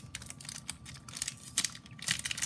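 Clear plastic sticker packet crinkling as it is handled, in short irregular crackles.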